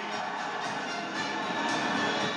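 Music from a television broadcast, played back through the TV's speakers and picked up in the room.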